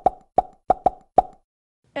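A quick run of short pops, all at the same pitch: five of them in just over a second, unevenly spaced.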